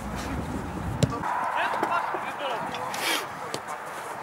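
Sounds of a small-sided football game on artificial turf: faint calls from players and a single sharp knock about a second in, as of a ball being kicked.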